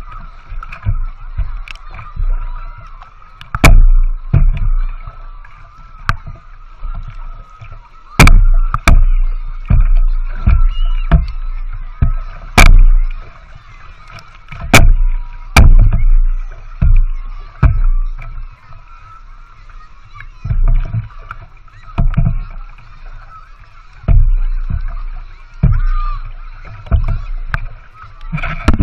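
Water sloshing and slapping against a small boat's hull as it is paddled with a wooden paddle, heard close and muffled through a waterproof action camera, with irregular low surges every second or so and sharp knocks of the paddle against the hull.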